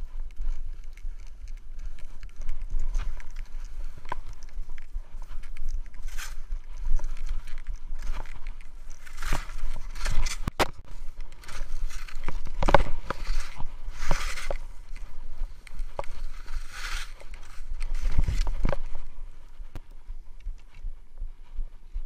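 Skis running over snow, with a steady low wind rumble on the camera's microphone. Hissing scrapes swell several times as the skis turn. Sharp knocks come through, loudest about ten and thirteen seconds in, and the sound eases off near the end.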